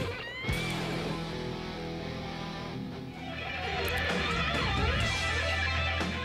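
Heavy metal music led by distorted electric guitar over a sustained low bass note, with a rising squeal near the start; the music changes about three seconds in.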